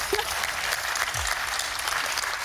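Studio audience applauding a correct answer, with a contestant clapping along.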